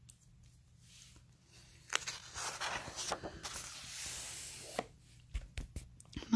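A page of a picture book being turned by hand: a click about two seconds in, then a few seconds of paper rustling and sliding, and a few soft knocks near the end as the page is laid down.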